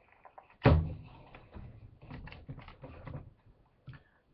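A sharp thump about 0.7 s in, followed by a run of softer knocks and rustling: objects being handled close to the microphone.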